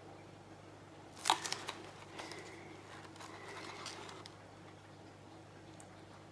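Wooden stick scraping and tapping inside a paper cup of resin: a sharp click just over a second in, then softer scrapes and taps.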